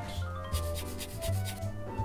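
A file rasping against a digital camera body in a run of quick scraping strokes, starting about half a second in, over steady background music.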